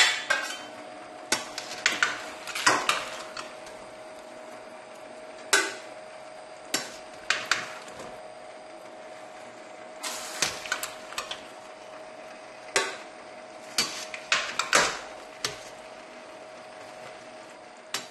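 A metal skimmer clinking and scraping against a stainless steel stockpot and a metal tray as boiled eggplants are lifted out one by one. The clinks come in irregular clusters over a faint steady hum.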